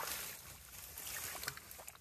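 Hands sloshing and splashing through shallow muddy water while groping for fish in a drained pond, with a short splash at the start and a small click about one and a half seconds in.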